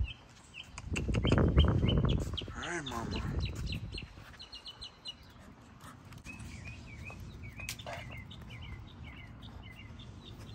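Small birds chirping over and over, short high chirps throughout. A loud low rumble about a second in and a brief wavering call near the three-second mark break in early on.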